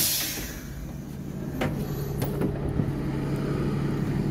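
ÖBB class 5047 diesel railcar's engine idling with a steady low drone; two short clicks come in the middle.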